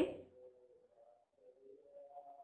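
Faint singing in the background: a slow melody of held notes stepping up and down in pitch, picked up by the teacher's microphone on the online class.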